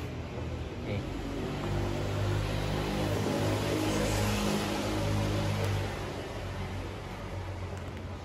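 A motor vehicle passing close by: its engine and road noise grow louder about two seconds in and fade away after about six seconds.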